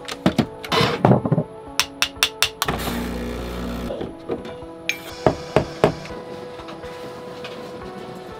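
Home espresso machine with a built-in grinder being worked: knocks and clicks of the metal portafilter, then a motor running for about a second. A steady hiss then sets in about five seconds in, the steam wand frothing milk, under background music.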